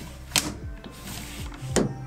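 Latch and sliding glass pane of a C.R. Laurence universal camper van sliding window being opened and closed by hand: two sharp clicks about a second and a half apart.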